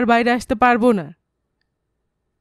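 A woman reading aloud in Bengali for about the first second, with a brief sharp click within it, then dead silence.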